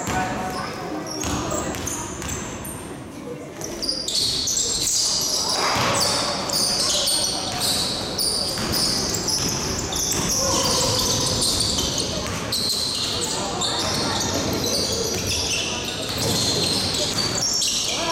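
Basketball game sounds in an echoing sports hall: the ball bouncing on the court, players' shoes squeaking on the floor, and players' voices calling out. The short high squeaks crowd in from about four seconds on, as the players run up the court.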